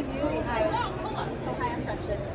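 Indistinct speech: voices talking, with no clear words.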